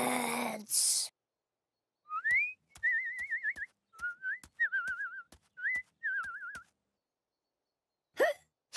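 Cartoon bird calls done as whistling: a rising whistle, then several wobbling, trilled whistle phrases, over light, even ticking steps about three a second as the birds walk. At the very start there is a brief voiced exclamation followed by a short hiss.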